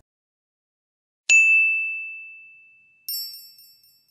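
Two short sound effects for the end card's animation: a single clear ding about a second in that rings and fades over about a second and a half, then a brighter, higher tinkling chime near the end.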